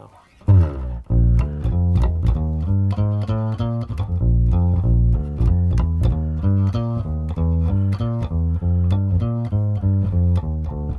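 Electric bass guitar played direct through a Dangerous Music BAX EQ with the EQ engaged: a steady groove of plucked notes starting about half a second in, each with a sharp string attack.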